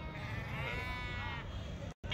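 A sheep bleats once: one long, slightly wavering call that starts about half a second in and lasts about a second, over a low background rumble.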